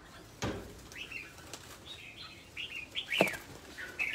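Birds chirping in short, high calls, with two brief sharp noises about half a second and three seconds in.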